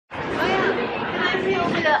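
Only speech: people talking, with chatter around them.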